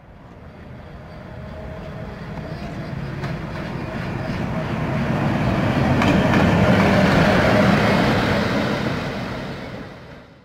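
PKP EP05 electric locomotive hauling passenger coaches, approaching and running past at close range. The rumble of wheels on rail grows steadily louder to a peak as the locomotive passes, with a couple of sharp clicks, then begins to fade.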